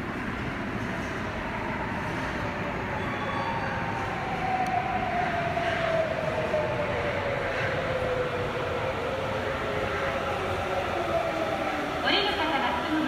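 Sapporo Municipal Subway Namboku Line rubber-tyred train running into an underground station: a steady rumble that grows slightly louder, with a motor whine falling in pitch as the train brakes for the platform.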